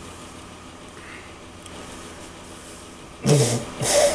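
Quiet at first, then a man blowing his nose into a paper tissue: two loud blows about half a second apart, near the end.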